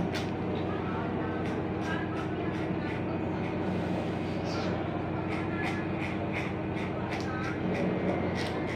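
Corded electric hair clipper running with a steady buzz as it is worked through a man's hair, with occasional short clicks.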